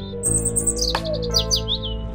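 Background music of sustained, held notes with birdsong over it: quick, high chirping notes that fall in pitch, in two short runs.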